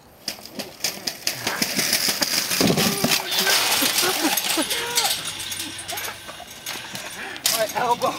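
A metal shopping cart rattling and clattering as it rolls fast down a concrete ramp and crashes, with a loud burst of clatter and yelling voices in the middle.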